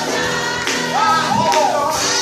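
A small group of women singing a gospel song over a keyboard accompaniment, with a couple of sharp percussive beats.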